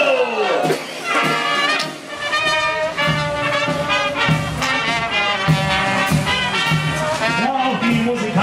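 A marching brass band plays: trumpets, trombones and baritone horns over a bass drum, with low bass notes joining about two seconds in.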